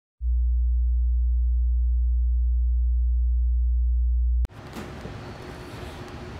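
A steady, very low pure tone, loud and unchanging, holds for about four seconds and then cuts off suddenly. After it comes the rumble of a moving passenger train heard from inside the carriage.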